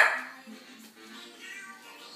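A pet dog gives one short, sharp bark right at the start, over background music that plays throughout.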